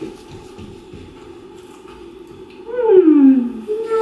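A person's voice giving one long falling 'ooh' about three seconds in, after a quiet stretch, with a shorter held note just after it.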